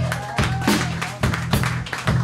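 A live blues band playing, led by sharp drum kit hits every few tenths of a second over a sustained low note from the bass or guitar.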